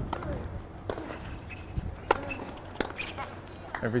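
Tennis ball struck by racket strings during a doubles rally on a hard court: a few sharp, separate pops about a second apart, the loudest about two seconds in.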